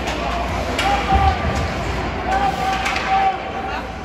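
Spectators at an ice hockey game shouting long wordless calls, with sharp clacks of sticks and puck during play along the boards and the steady hum of the rink behind.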